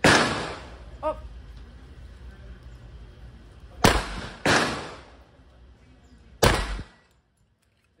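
Armscor .45 ACP pistol firing: a loud report right at the start, then three more shots about four, four and a half and six and a half seconds in, each ringing off the range walls. The sound cuts off shortly before the end.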